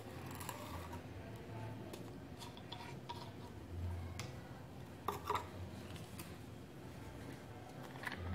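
Small glass reed-diffuser bottle and its metal screw cap being unscrewed and handled on a stone countertop: a few faint clicks and clinks, the clearest about five seconds in.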